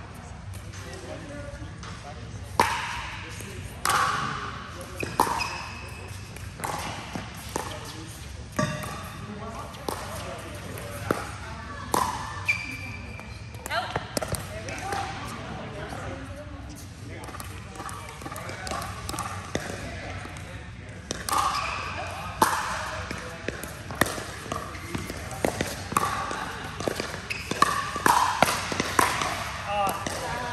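Pickleball paddles hitting a plastic ball: scattered short, sharp knocks with the echo of a large indoor hall, mixed with voices talking in the hall, busier near the end.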